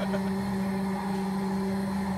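A steady mechanical hum of constant pitch, running evenly without change.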